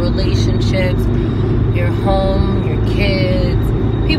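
Steady low rumble of a car's road and engine noise heard from inside the cabin while driving, with a woman's voice briefly about two and three seconds in.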